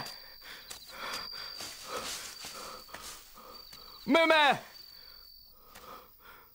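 Crickets chirping in a steady high trill, with faint footsteps and rustling through dry grass. About four seconds in, a man shouts one loud call, the loudest sound here.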